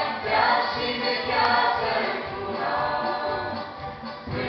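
Mixed choir of young men and women singing a Romanian Christian song together.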